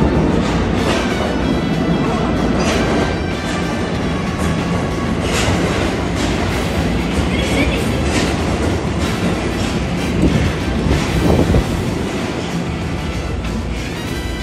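Subway train running alongside the station platform, with wheel and running noise and a few sharper clacks.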